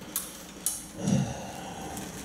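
Plastic carrier bag rustling twice, about half a second apart, followed by a faint low murmur.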